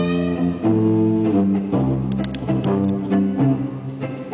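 A live instrumental quartet playing a run of held low notes, each changing pitch every half second to a second, with a few short, sharp notes near the middle.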